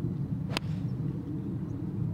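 A golf club striking the ball on a tee shot: one sharp click about half a second in. A steady low rumble sits underneath.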